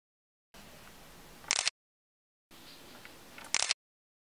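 A camera giving a short, high click twice, about two seconds apart. Each click ends a short stretch of faint room tone that sits between dead-silent gaps where brief close-up clips are cut together.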